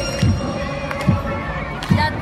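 Football supporters' drum beating a steady rhythm, about one beat every 0.85 s (three beats), under a stadium crowd chanting in celebration of a goal.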